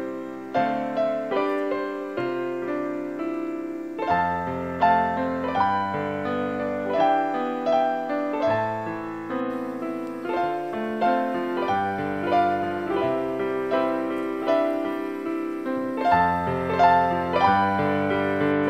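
Background piano music: a gentle run of single notes and chords.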